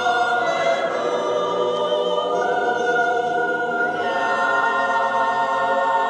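Mixed choir singing long held chords, moving to new notes about two and a half seconds in and again at about four seconds.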